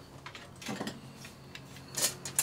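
Faint clicks and light knocks of recurve bow gear being handled, with a short cluster of knocks a little under a second in, over a low steady hum.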